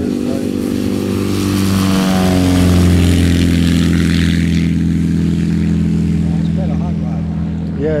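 Light propeller aircraft going past with its engine note falling in pitch, loudest about three seconds in, over a steady low engine hum that runs throughout.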